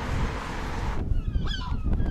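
A rushing noise for about the first second, then from about a second in a quick run of bird calls, each call a short rise and fall in pitch.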